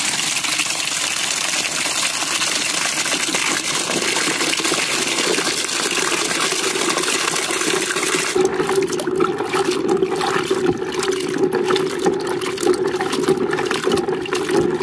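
A stream of water pouring into a plastic bucket of jujubes, a steady rush of water on fruit and water. About eight seconds in the sound turns deeper, with a steady low note and irregular splashing as the bucket fills.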